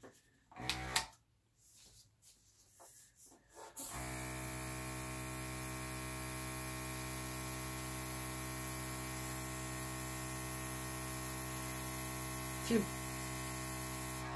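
Small electric airbrush compressor switched on about four seconds in, then running with a steady, even buzzing hum and a light hiss of air.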